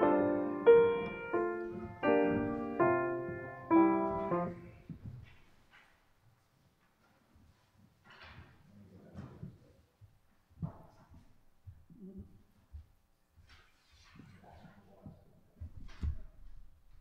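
A piano plays a few slow, sustained chords, each struck and left to ring. The last chord comes about four seconds in and dies away, leaving only faint scattered knocks and rustles.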